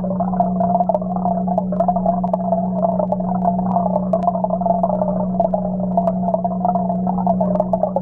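Aquarium air bubbling and pump hum heard underwater: a steady low hum under a wavering bubbling wash, with scattered faint ticks.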